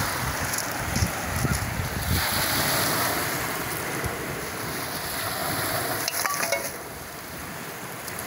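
Sea surf washing on a pebble beach, with wind buffeting the microphone. Close by, a flock of feral pigeons scuffles over food with bursts of wing-flapping, and there are a few soft knocks and clicks.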